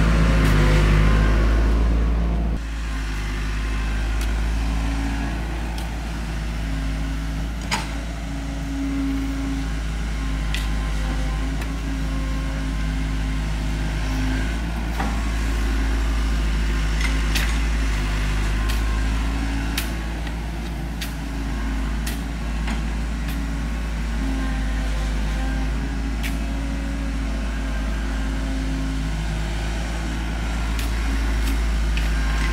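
Diesel engine of a compact tracked excavator running steadily with a low drone, a little louder for the first two seconds. Scattered sharp knocks sound at irregular intervals over it.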